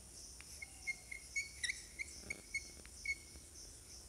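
Chalk writing on a blackboard: a few faint taps and a run of short, high squeaks, about eight in under three seconds.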